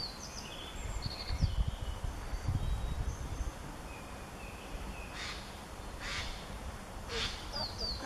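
Japanese yellow bunting singing short, clear high notes in the first couple of seconds, with thin high whistles after. Near the end, three harsh, rasping Eurasian jay calls come about a second apart. Low thumps sound between one and three seconds in.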